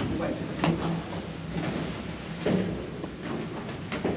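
Indistinct voices talking in a room, with a few soft knocks and bumps.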